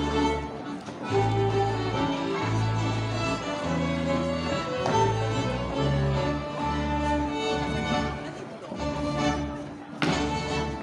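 Live Swedish gammeldans band playing an old-time dance tune, fiddles carrying the melody over a steady bass line with notes about a second apart.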